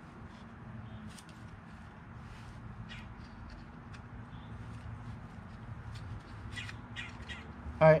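Light handling of a plastic recoil starter pulley and its rope, a few faint clicks, over a low steady hum. A few short bird calls are heard in the distance.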